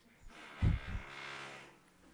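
Construction noise from a power tool working sheet metal, heard as a steady machine hum with a heavy low thud about half a second in. It sounds like drilling into sheet metal.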